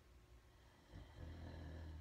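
Near silence: faint room tone, with a faint low hum coming in about a second in.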